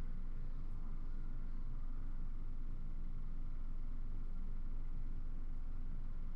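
Steady low hum of room tone, with no distinct events.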